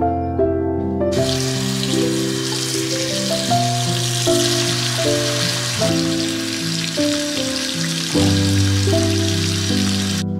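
A stream of water pouring into a stainless steel pot of fabrics, starting about a second in and stopping abruptly at the very end, over soft piano music.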